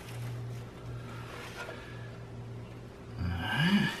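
A steady low hum, then a man's brief wordless voiced sound, rising in pitch, near the end. No distinct knife or chopping sounds stand out.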